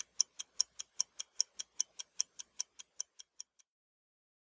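Fast clock-like ticking, about five crisp ticks a second alternating slightly louder and softer, that cuts off suddenly near the end.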